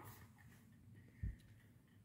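Near silence: room tone, with one faint, short low thump a little past the middle.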